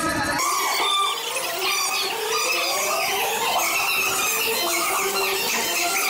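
A crowd of children screaming and squealing with excitement: many overlapping high-pitched voices, rising and falling, at a steady, loud level.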